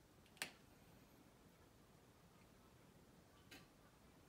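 Near silence with two short clicks from a whiteboard marker against the board: a clear one about half a second in and a fainter one near the end.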